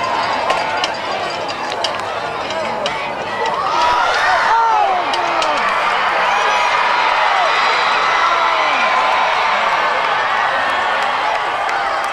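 Football crowd in the stands shouting and cheering, many voices at once. It swells about four seconds in and stays loud as a long run breaks open.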